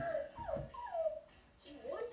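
A few short, high-pitched whines, each falling in pitch, in the first second, much higher than the man's voice, then a brief hush.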